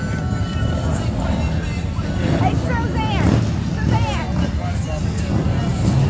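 Indistinct voices over a steady low rumble, with a high voice that rises and falls in pitch about halfway through.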